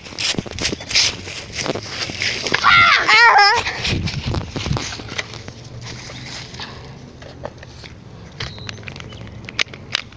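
Dry fallen leaves crunching and rustling underfoot as people scramble across a leaf-covered lawn. A loud, wavering yell comes about three seconds in. After that the leaf rustling carries on more quietly with a few sharp crackles.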